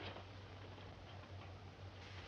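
Faint ticks and small clicks over a low, steady hum in the soundtrack, with one sharper click right at the start.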